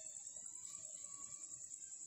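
A faint, steady high-pitched trill with a fast, even pulse.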